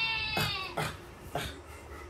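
A goat's bleat, one long wavering call that ends about half a second in, dropped in as a "GOAT" joke. A few short claps follow.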